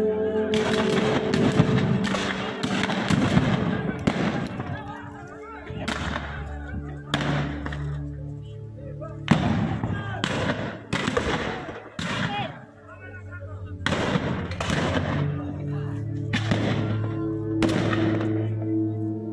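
Black-powder rifles firing blanks in a battle reenactment: about twenty scattered shots, some in quick runs of two or three, under steady background music.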